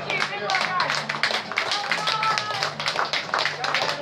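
A small group clapping, with people talking and laughing over the applause.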